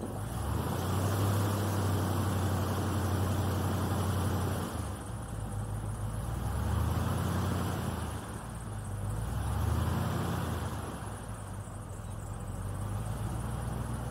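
Airboat engine and rear propeller running under way, with a steady low hum. It holds loud for the first four seconds or so, then eases off and swells up twice more.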